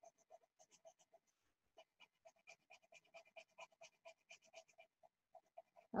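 Colored pencil shading on a paper worksheet: faint, quick back-and-forth scratching strokes, several a second.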